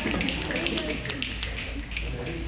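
Scattered hand claps from a group, mixed with excited calling-out voices.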